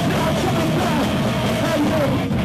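Band playing loud, heavy rock music live.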